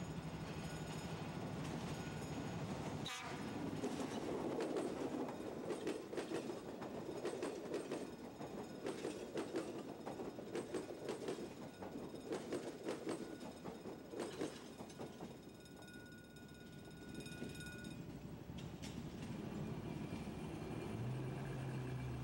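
Electric commuter train on the Sarmiento line approaching and passing close by. For about ten seconds, from a few seconds in, its wheels clatter rapidly over the rail joints, then the sound eases off as the train moves away.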